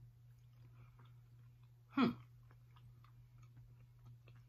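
Faint wet clicks of a person chewing a mouthful of breaded vegan chicken with mashed potatoes, with a short, falling 'hmm' about two seconds in, the loudest sound. A steady low hum runs underneath.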